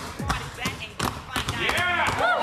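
Several basketballs bouncing on a hardwood floor, dribbled two at a time by each player: a quick run of overlapping thumps, several a second.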